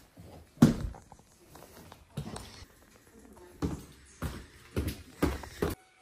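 Footsteps on a plank floor: about seven uneven steps, the first the loudest.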